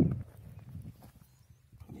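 Footsteps on dry, pebbly tilled soil: a few soft steps in the first second, then a pause, with faint scuffs near the end.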